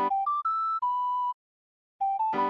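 Ocarina-style melody playing four clear notes, G, D, E and B: a short low note, two quick higher notes and a held middle note. The sound cuts off about two thirds of the way in. A piano-like G major chord is dying away under the first note.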